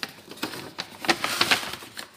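Crackling and crinkling of a granola pouch being handled, a quick run of sharp rustles that thickens in the second half.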